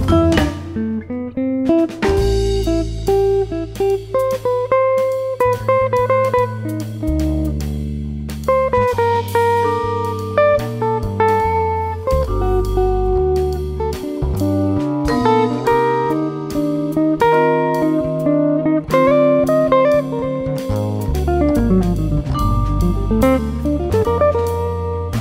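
Jazz-fusion instrumental: an electric guitar plays a melodic line over a moving bass line and a drum kit with cymbals.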